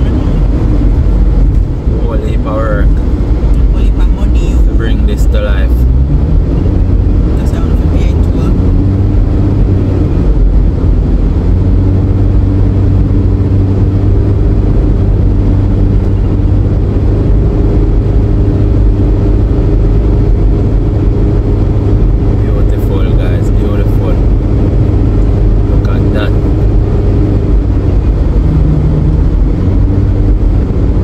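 Car on a highway heard from inside the cabin: a loud, steady rumble of road and engine noise. The engine note rises between about eight and twelve seconds in, then holds steady at cruising speed. Short snatches of voices come and go in the background.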